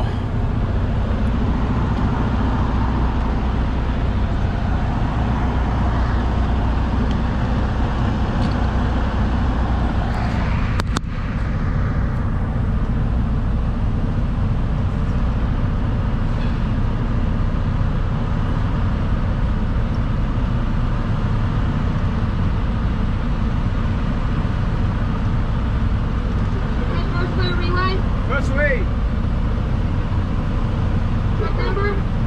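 Diesel engine of a semi-truck idling steadily, heard from inside the cab, with a brief click about eleven seconds in.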